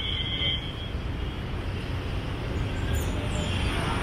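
Street traffic noise: a steady low rumble that grows slightly louder toward the end, with a brief high thin tone right at the beginning.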